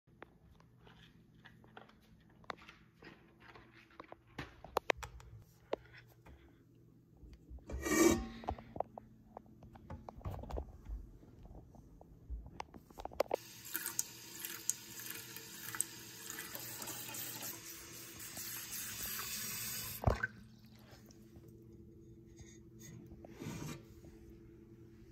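Water from a kitchen tap running into a cooking pot: a steady hiss for about seven seconds, starting a little past halfway and shut off with a click. Before it come scattered clicks and knocks of handling, with one louder knock about eight seconds in.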